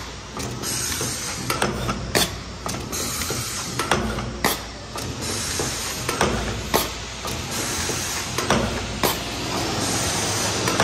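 Paper cup forming machine running: a steady hiss with sharp mechanical clicks and knocks repeating roughly once or twice a second as it cycles.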